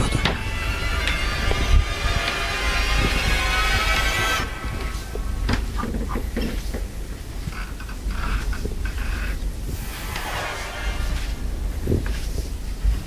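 Tense horror-film underscore: a dense droning texture over a deep low rumble. About four seconds in the drone drops away, leaving the rumble with sparse soft knocks and creaks.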